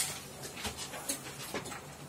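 Board duster wiping across a whiteboard in short strokes, a soft scratchy rubbing as the writing is erased.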